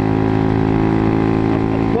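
125cc motorcycle engine running at a steady pitch while riding, with wind rumble on the microphone.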